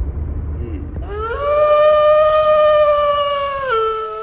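A single wolf howl that rises about a second in to one long, steady note, then drops to a lower pitch near the end and fades. Before it, a low rumble from inside the car.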